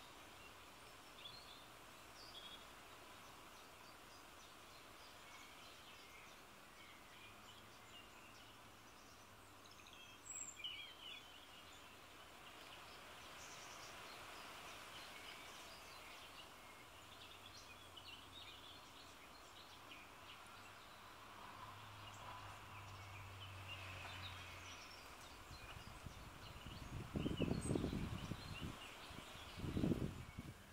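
Faint outdoor birdsong, scattered short chirps throughout. Near the end, wind gusts rumble against the microphone.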